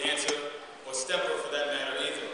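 A man's voice over a podium microphone in a large hall, in two stretches with a short break just under a second in.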